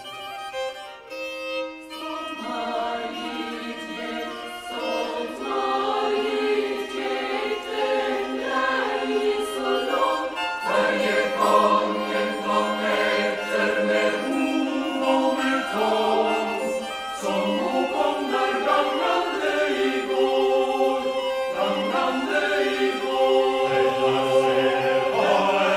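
Chamber choir singing a Norwegian folk-song arrangement in held chords, quieter for the first two seconds and then fuller.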